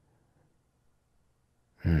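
Near silence, then near the end a man's short, thoughtful "hmm".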